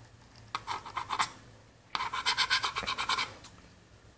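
Scratchy rubbing and scraping on plastic as the acrylic lens from a CRT projection tube and its mount are handled with gloved hands: a short burst of scratches, then a quicker run of rapid scratches lasting about a second and a half.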